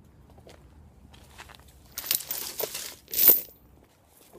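Dry palm fronds and leaves crunching and crackling. There is a crackly stretch about two seconds in, then a shorter, louder crunch about a second later.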